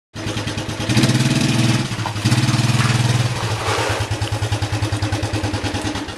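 A Suzuki engine running with a fast, even putter. It starts abruptly, is revved up twice in the first three seconds, then settles to a steady idle.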